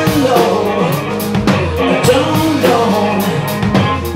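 Live rock band playing: a man singing lead over a strummed acoustic guitar, electric bass and drum kit, with steady drum and cymbal hits.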